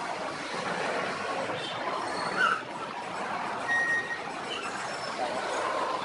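Steady traffic noise of cars queued and creeping through toll-gate lanes, with a short high beep about four seconds in.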